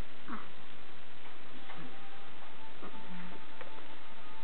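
A steady hiss of background noise, with a few faint ticks and short, faint tones over it.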